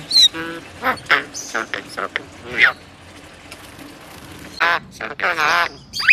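Crested myna calling on a cue to sing: a run of short whistles, squawks and sliding notes, quieter in the middle, with a louder stretch of chatter near the end.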